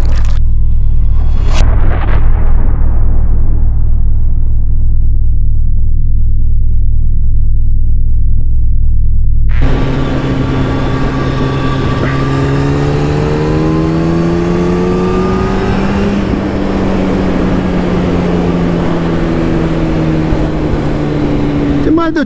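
Electronic intro music with a deep steady bass and two sharp hits, cutting off suddenly about ten seconds in. Then a Kawasaki Ninja ZX-10R's inline-four engine, heard from the bike with wind noise over the microphone, its pitch rising slowly for about six seconds as it accelerates and then easing off a little.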